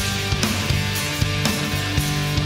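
Rock band playing an instrumental passage with no vocals: sustained guitar and bass parts over a steady drum beat.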